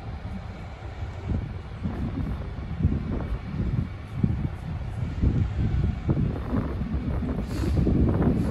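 Wind buffeting the microphone: an uneven, gusty low rumble that swells and falls.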